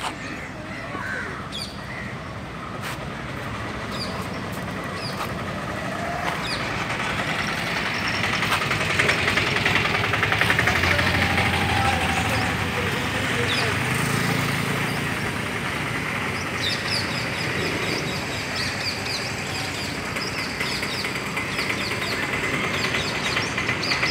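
Outdoor street ambience: birds chirping and calling repeatedly over a continuous background of traffic noise. The noise swells for several seconds in the middle as a vehicle passes.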